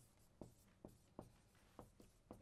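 Faint marker strokes on a whiteboard while writing: about five short, sharp ticks and scratches of the marker tip on the board.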